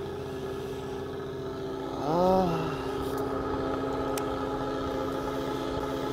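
Fishing boat's engine running with a steady, even drone. About two seconds in, a man's voice sounds briefly over it.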